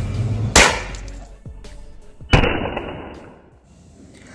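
Two homemade throw bombs, each a pair of steel hex nuts bound by a rubber band around a roll-cap charge, hitting concrete and going off with a sharp bang. The second bang comes about two seconds after the first.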